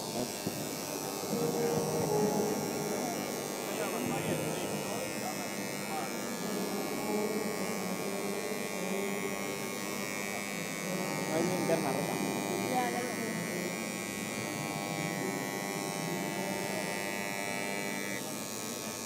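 Handheld electric engraving pens buzzing steadily as they etch lines into clear acrylic sheets, with faint voices behind.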